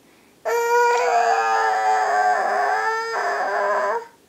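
A toddler's long wailing cry: one loud note held at a nearly steady high pitch for about three and a half seconds, starting about half a second in and cutting off suddenly at the end.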